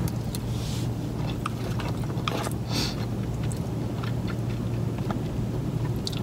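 Close-miked chewing of a mouthful of burrito-bowl rice and fillings, with small clicks and scrapes of a fork against the fibre bowl. Under it runs a steady low hum from the car.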